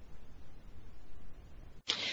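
Faint, even background hiss and hum from an open conference-call microphone, switching on abruptly, with a brief louder burst of noise near the end.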